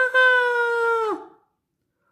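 A woman's voice giving a long, high-pitched, steady wail, "Waaaaah!", acting out a toddler screaming. The pitch drops and the wail cuts off a little over a second in.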